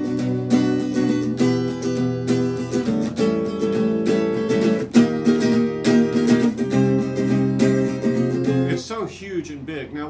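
Acoustic guitar strumming a chord progression that jumps straight up a half step into a new key with no connecting chord, an abrupt modulation that slams in. The strumming stops near the end, and a man's voice follows.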